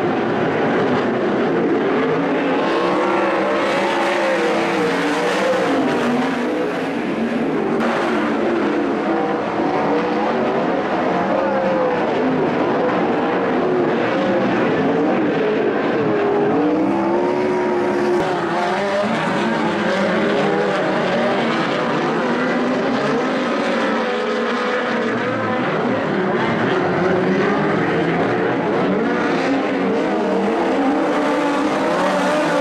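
Several sprint car engines racing on a dirt speedway oval, their pitches rising and falling and overlapping as the cars lap the track.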